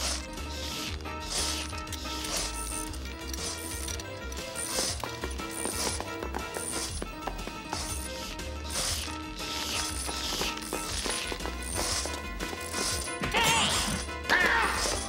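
Cartoon workshop sound effects, a run of ratcheting and clanking tool noises about once a second, over background music. A warbling high sound comes in near the end.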